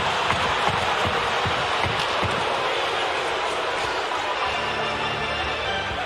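Ice hockey arena crowd noise, a steady din with a few short knocks in the first seconds; held music tones come in about four and a half seconds in.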